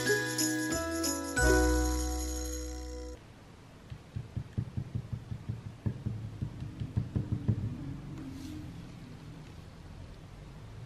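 Jingly background music that cuts off about three seconds in, followed by a run of soft, quick taps and rubs from a small encaustic painting iron working on wax-coated painting card.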